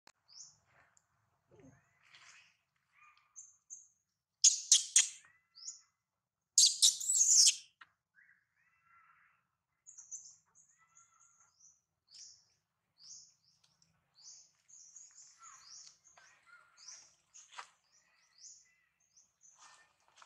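Birds chirping in forest, short high calls repeating on and off. There are two much louder, harsher bursts of calling about four and a half and seven seconds in.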